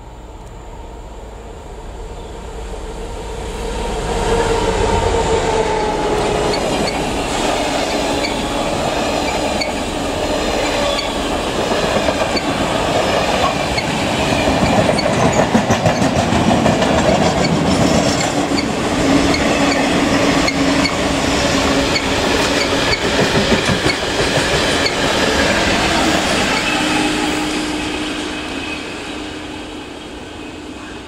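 A Class 66 diesel freight locomotive and a long rake of engineers' wagons passing at speed. The sound builds about three seconds in, with the wheels clicking steadily over the rail joints as the wagons roll by. A steady tone rides under it in the second half, and the whole train fades near the end.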